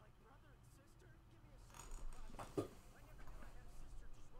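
Faint voices from the anime episode's soundtrack, playing quietly under the reaction, with a louder burst a little past halfway.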